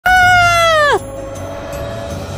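A woman's loud, high-pitched scream lasting about a second, its pitch dropping sharply as it breaks off. A quieter single steady note then holds.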